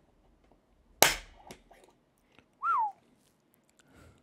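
A spring-loaded automatic centre punch fires once into a titanium backup plate about a second in, making a single sharp, loud pop that dies away within half a second. Just under two seconds later comes a short, falling whistle-like tone.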